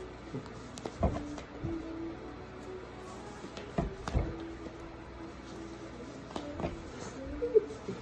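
Socks being pulled on in a hurry over the feet: cloth rustling, with scattered bumps and knocks as two people tug at them. Faint held tones run underneath.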